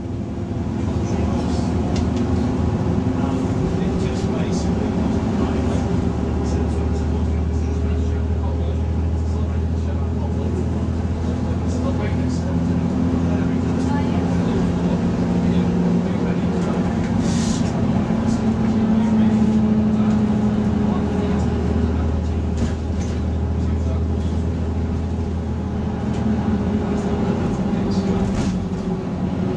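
Volvo B6LE single-deck bus's six-cylinder diesel engine running under way, heard from inside the saloon, its note rising and falling as the bus speeds up and changes gear.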